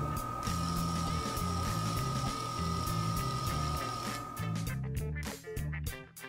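Background music with a bass beat. Over it runs a steady high whine with a thin hiss from the handheld laser wire stripper during its strip cycle. The hiss stops about four seconds in and the whine just after, as the cycle completes.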